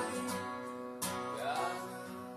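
Steel-string acoustic guitar strummed, chords ringing, with a fresh strum about a second in.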